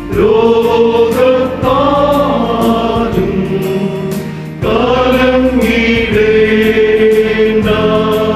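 Male choir singing a Malayalam Christian hymn in long, held phrases, with a short break and a new phrase about four and a half seconds in.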